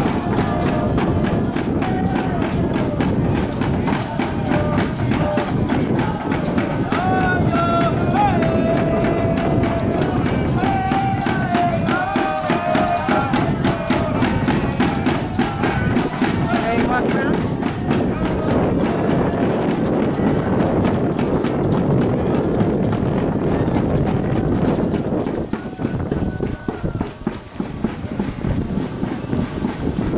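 Pow-wow drum group: a large drum struck in a steady even beat under high-pitched group singing. The singing drops away a little past halfway while the beat carries on.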